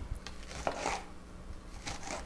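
Serrated knife cutting kernels off a fresh corn cob onto a wooden cutting board: faint scraping cuts, with a light tap of the blade near the end.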